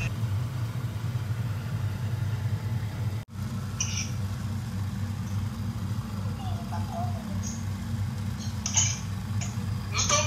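A steady low mechanical hum, like a small motor or fan running, with a very brief dropout about three seconds in.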